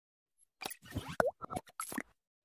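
Cartoon pop sound effects of an animated subscribe-button intro: a rapid string of short pops and clicks, some with a quick sliding pitch, starting about half a second in.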